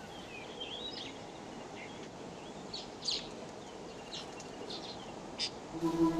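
Small birds chirping and calling now and then, with short high chirps and little pitch glides, over a steady faint outdoor hiss. Held music notes begin right at the end.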